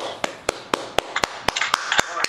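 Applause: hand clapping in a steady rhythm of about four claps a second.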